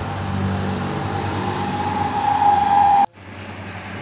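Road traffic with a heavy vehicle's engine running and a steady high-pitched tone growing louder, cut off abruptly about three seconds in, after which quieter traffic noise follows.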